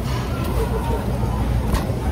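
Metal shopping cart being pushed over a store floor, a steady rolling rumble picked up through the phone resting in its basket.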